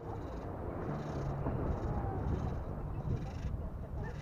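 Radio-controlled rock crawler's electric motor and shaft drivetrain whirring in about four short bursts of throttle as it climbs a boulder, over a steady low rumble.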